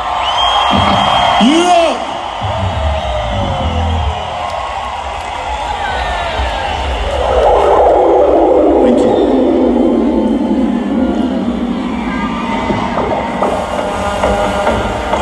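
Live concert PA sound between numbers: electronic swells with a few low bass thumps and a long falling synth sweep, over a cheering festival crowd.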